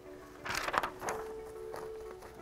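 A quick cluster of clicks and paper rustle about half a second in, as a sheet of paper is fed into a manual typewriter and the platen is turned, over steady background music.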